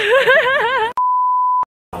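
A woman laughing for about a second, then a flat electronic beep tone held for over half a second and cut off into a moment of dead silence, an edited-in beep at the cut between scenes.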